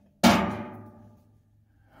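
A single clang of sheet metal from the metal firebox panel being knocked, about a quarter second in, ringing and dying away over about a second.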